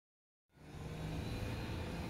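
Steady low outdoor rumble and hum, fading in after about half a second of silence.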